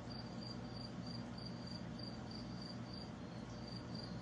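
A high-pitched chirp repeating evenly, a little over two times a second, over a low steady hum.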